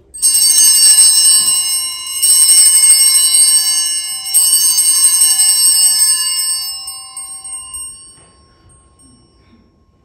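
Altar bells shaken three times, about two seconds apart, each a bright jingling ring that dies away over several seconds. They are rung at the elevation of the host during the consecration.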